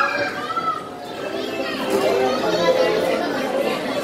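Children and adults chattering and calling out together on a crowded carousel, with a child's high voice in the first second.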